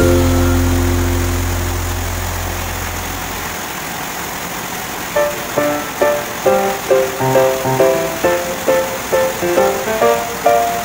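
Background music: a held chord fades away over the first few seconds, then a quick plucked-string melody starts about five seconds in.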